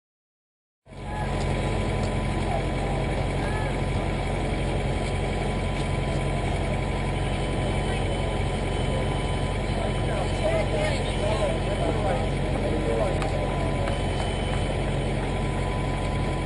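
Outdoor ambience at a busy race transition: a steady low mechanical hum under indistinct voices of the people around. It starts abruptly about a second in.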